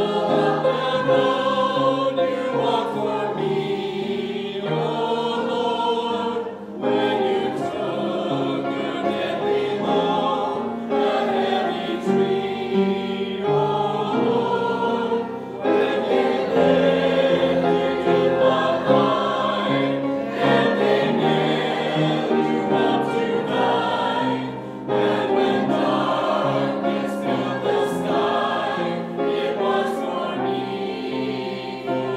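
Mixed church choir of men's and women's voices singing a hymn together with piano accompaniment, the sound dipping briefly twice between phrases.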